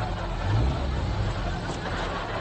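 Small convertible sports car's engine running with a low, steady rumble, swelling briefly louder about half a second in, as if lightly revved.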